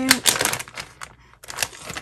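A quick run of sharp clicks and crinkles from a plastic bag of wax melt cubes being handled, with a short pause about a second in and a few more clicks after it.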